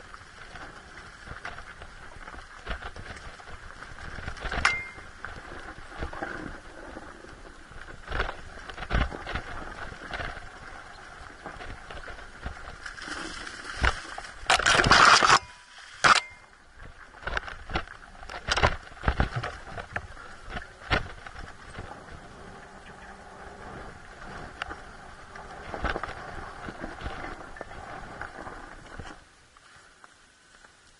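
Enduro dirt bike rolling slowly down a steep, rocky singletrack: a steady running sound with frequent sharp knocks and clatters from the wheels and suspension over rocks, and a brief loud rush of noise about halfway through. The sound drops away about a second before the end as the bike stops.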